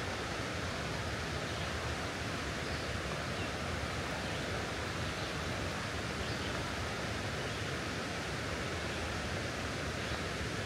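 Steady rush of the Cuyahoga River's flowing water below Gorge Dam, an even unbroken hiss.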